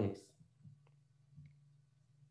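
A man's voice trails off at the very start, then a low steady hum with a few faint, short clicks.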